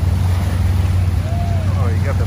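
Motorboat engine running as the boat passes across the water: a steady low rumble.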